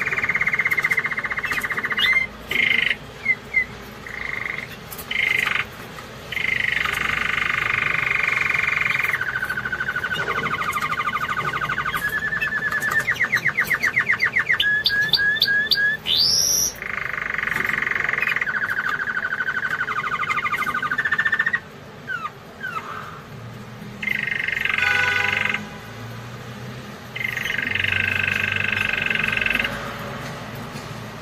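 Domestic canary singing: a long song made of rolled trills, each tour held a second or more before the next, with a fast run of separate notes and a sharp rising whistle about halfway through, then shorter phrases with brief pauses between them.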